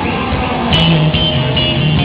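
A heavy metal band playing live: electric guitar and bass with drums. A low riff of held notes that change pitch comes in a little before halfway.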